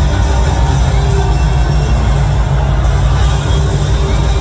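Live rock band playing loudly over a concert PA, recorded from within the crowd, with heavy bass and drums under the guitars.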